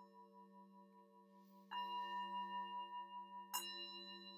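Hand-hammered metal singing bowl, held on the palm, ringing with a low hum and many overtones; it is struck with a mallet lightly at the start, then firmly about two seconds in and again near the end, each strike making the ring louder, with some overtones pulsing.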